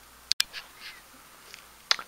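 Faint room tone broken by a few short clicks and handling noises from a camera being moved, the sharpest a click with a split-second dropout about a third of a second in and another click near the end.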